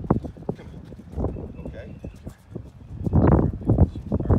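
A dog's claws and a man's shoes tapping and scuffing on a concrete driveway as they step and turn, with a louder burst of noise about three seconds in.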